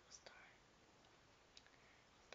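Near silence: room tone, with a brief faint whisper near the start.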